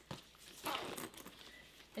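Soft rustle and light clicks of a webbing bag strap being pulled through its slider adjuster to shorten it: a click right at the start, a short rustle about two thirds of a second in, then small handling sounds.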